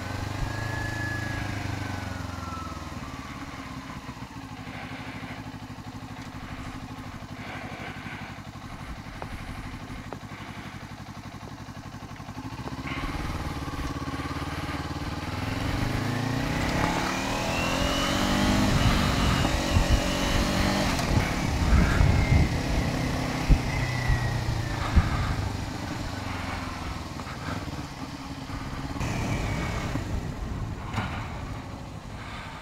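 Kawasaki Ninja 400 parallel-twin engine heard from the rider's seat. It slows at the start, then runs low and steady for several seconds. From a little under halfway it gets louder and revs up through the gears, with wind buffeting the microphone at speed, then eases off again near the end.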